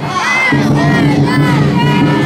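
A group of children shouting together over steady background music with low held notes.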